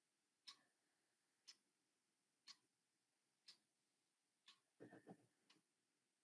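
Very faint ticking of a clock, one tick each second, with a brief soft knock-like sound near the end.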